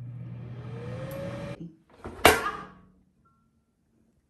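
Philips air fryer switched on and running, a steady low motor hum with a faint whine rising as its fan spins up, which stops about a second and a half in. About two seconds in comes a single sharp clunk.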